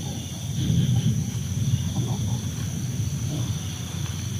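A low, uneven rumbling sound, with the steady high chirring of night insects running behind it.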